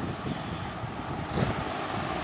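Steady background noise in a pause between speech, with a faint short sound about one and a half seconds in.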